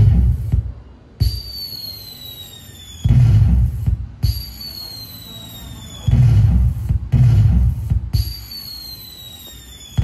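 Electronic firework sound effect from a pixel LED cracker-tree controller with sound: a high whistle falling in pitch for about two seconds, then a loud boom, repeating about every three seconds.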